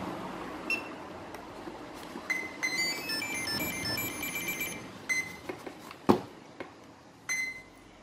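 Pixhawk flight controller's buzzer playing its quick multi-note startup tune on power-up from the flight battery, a sign the autopilot has booted; a few single high beeps follow, with a sharp click about six seconds in.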